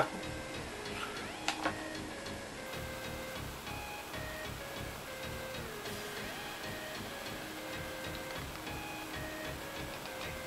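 Background music: a soft melody of held notes over a steady ticking beat, with two short clicks about a second and a half in.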